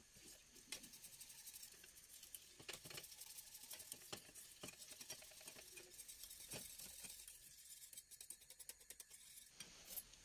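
Faint, irregular clicking and scraping of a wire whisk stirring béchamel sauce in a stainless steel saucepan.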